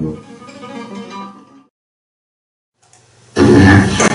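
A flamenco guitar playing softly, its held notes fading out about a second and a half in, then a sudden cut to silence. Near the end a loud burst of sound starts abruptly.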